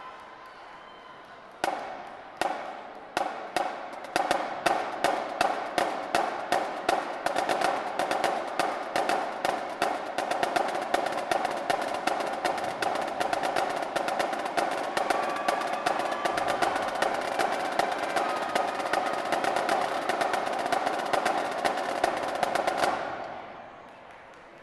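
Marching drumline of snare drums and bass drums playing a cadence. A few spaced strokes about two seconds in quicken into a fast, steady pattern that carries on and then stops abruptly near the end.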